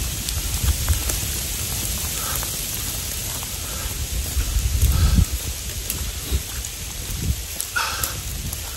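Heavy rain falling, a steady hiss, with a low rumbling surge about five seconds in.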